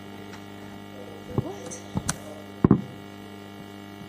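Steady electrical mains hum, with a few short soft knocks in the middle.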